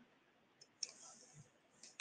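Near silence with a few faint computer mouse clicks, the clearest a little under a second in and one at the very end.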